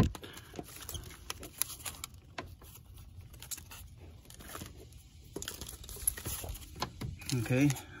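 Small scattered clicks, taps and rustles from hands handling a corrugated air-intake hose, its metal bracket and the intake manifold on top of the engine. A short stretch of voice comes near the end.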